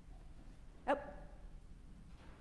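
A woman's single short exclamation, "oh!", a little under a second in, over quiet church room tone with a low hum.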